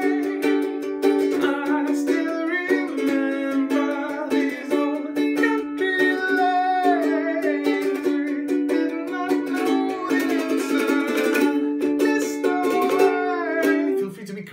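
CloudMusic ukulele strumming the chorus chords D, G sus2, B minor and A over and over, with a man singing along. The playing stops at the very end.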